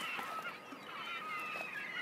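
Faint calls of seagulls, a harbour sound effect, drawn-out gliding cries over a low background hush.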